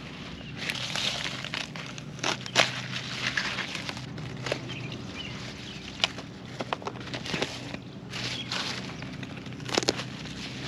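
Heads of lettuce being cut off with a knife and set into a plastic crate: rustling and crunching leaves with scattered sharp clicks and knocks, over a faint steady low hum.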